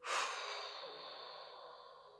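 A long, heavy sigh: a sudden breath out that fades away over about two seconds.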